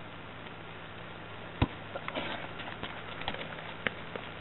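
Light, irregular patter of players' feet running on a sports field, with one sharp knock about a second and a half in.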